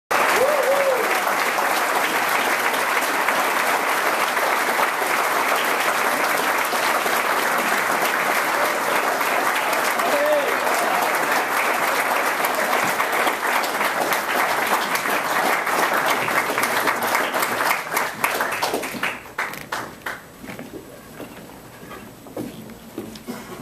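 Audience applauding steadily, with a couple of brief calls from the crowd; the clapping thins to scattered claps and dies away near the end.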